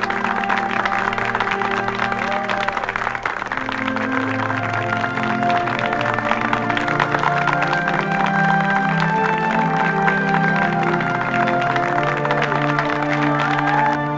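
Film soundtrack music of long held notes, moving slowly from chord to chord at a steady level.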